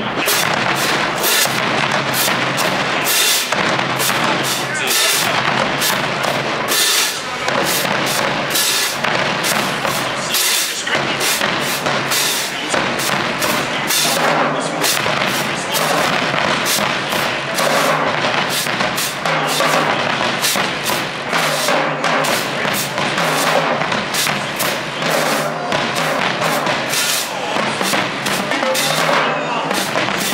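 Marching drumline playing a cadence: snare drums, multi-tenor drums, bass drums and cymbals struck in fast, continuous rhythmic patterns.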